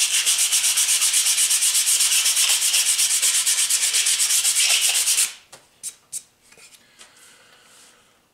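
Sandpaper rubbed back and forth along a wooden guitar neck in a fast, even rhythm of strokes. It stops about five seconds in, followed by a few light knocks.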